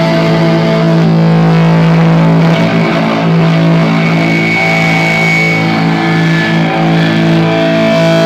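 Distorted electric guitar and bass holding a loud, steady droning chord through amplifiers, with high ringing tones that rise out and fade, typical of amp feedback.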